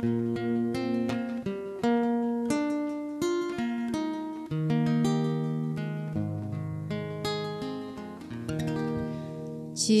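Acoustic guitar played solo, plucking a slow melody of single notes over sustained bass notes as the song's introduction before the vocal comes in.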